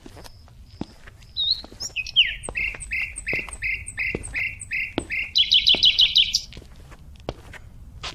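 A songbird singing: short high peeps, then a run of loud whistled notes about three a second that ends in a fast trill. Light ticks recur about once a second beneath it.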